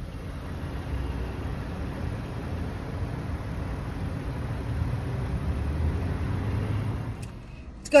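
Car cabin noise in slow traffic: a steady low rumble of engine and road, swelling slightly in the latter half and falling away shortly before the end.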